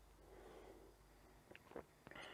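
Near silence: a faint breath and two soft mouth clicks as stout is sipped from a glass.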